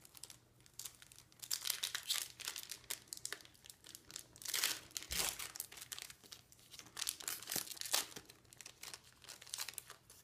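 Foil wrapper of a Pokémon trading card booster pack being torn open and crinkled in the hands, in several bursts of crackling.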